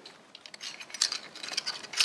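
Light metallic clinks and taps as fingers handle the metal parts of a Harley Sportster clutch and its homemade compression tool, with a small cluster of ticks about a second in.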